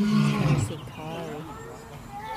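A lion roaring: a loud, deep call that falls in pitch and ends about two-thirds of a second in, followed by quieter wavering voice-like sounds.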